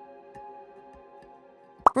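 Soft background music with sustained held notes, and a short sharp blip rising in pitch just before the end.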